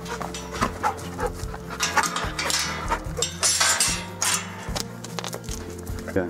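A male dog making several short sounds, the strongest about two and four seconds in, over steady background music.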